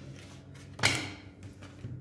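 A tarot card slapped down on a wooden desktop: one sharp knock a little under a second in, amid quiet card handling.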